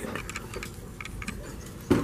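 Scattered light clicks and ticks over a low room hum, with one short, louder thump just before the end.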